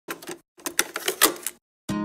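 VHS video player's tape mechanism clicking and clunking in two quick bursts as play engages. An acoustic guitar strum begins near the end.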